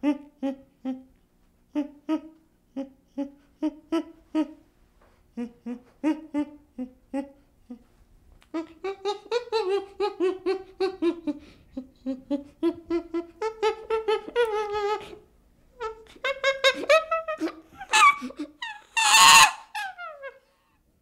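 Chimpanzee calling: a run of short, clipped hoots for the first several seconds, then longer calls that rise and fall in pitch, building to a loud scream near the end.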